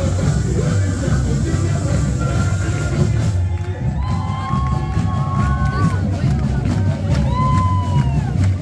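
Loud samba music driven by drums, with crowd voices and cheering over it.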